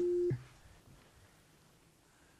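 A steady censor bleep tone covering a swear word, cutting off about a third of a second in, followed by near silence.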